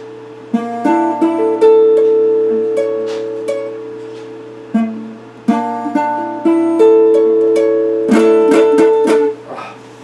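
Electric guitar played slowly: single plucked notes and chords that ring out and fade, then a quick run of strummed chords about eight seconds in, stopping just after nine seconds.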